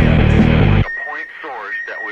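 Guitar-driven rock music that stops suddenly just under a second in. It gives way to a quieter voice recording with a steady high tone running under it.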